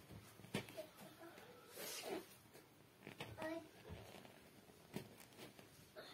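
Faint swishes and rustles of thread being drawn through cloth and fabric being handled during hand stitching, with a few soft clicks.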